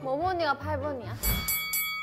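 A woman speaking Korean, then about a second and a half in a bright chime sound effect with several steady ringing tones and quick repeated strikes.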